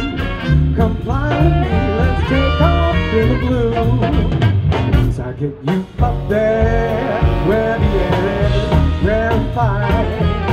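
Live swing band playing: saxophones and trombone over upright bass and drum kit. The band drops out briefly a little past the middle, then comes back in.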